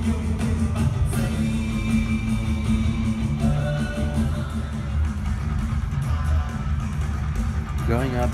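Rock music with electric guitar over a dense, steady bass.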